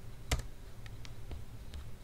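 A single sharp computer-keyboard keystroke about a third of a second in, followed by a few faint clicks, over a low steady room hum.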